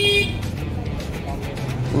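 Street background noise: a steady low rumble of traffic, with a high held tone cutting off just after the start.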